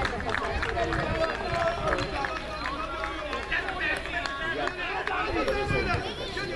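Many voices at once: spectators and young players calling out and chattering over one another at a children's football match, with some high-pitched shouts.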